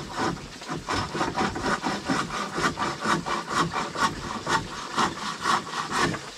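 Hand bow saw cutting through a wooden board, in rapid, even back-and-forth strokes.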